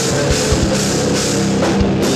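Metal band playing live: distorted electric guitar and bass guitar over a drum kit, with steady kick-drum strikes and cymbals.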